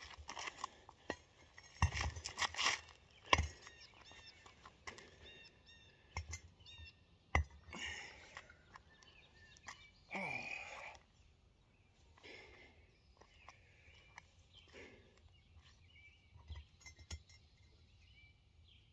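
Cast-iron kettlebells handled and set down on pavement: a few sharp knocks and clinks in the first few seconds and another at about seven seconds. Birds chirp in the background, and there is a short vocal sound about ten seconds in.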